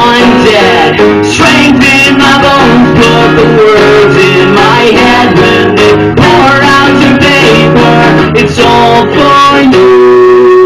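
Acoustic guitar strummed in a steady rhythm while a man sings along into a microphone.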